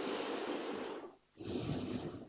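A man's breathing close to a microphone: one breath lasting about a second, then a shorter one.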